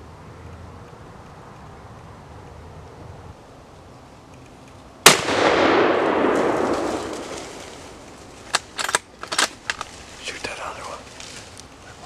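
A single muzzleloader rifle shot about five seconds in: a sharp crack followed by a loud boom that rolls away over two to three seconds. A few short sharp clicks follow a few seconds later.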